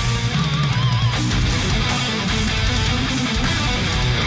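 Heavy metal song playing: distorted electric guitars over bass and drums, with a note bending up and down in pitch about half a second in.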